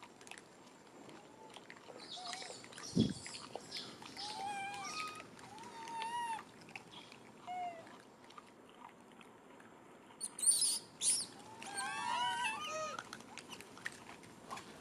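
Rhesus macaques calling: a string of short rising-and-falling squeaky calls, clustered thickly near the end, with sharper high shrieks in between. A single low thump about three seconds in.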